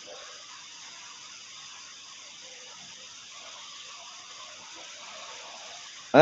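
Faint steady hiss of the recording's background noise, with no speech and no distinct events.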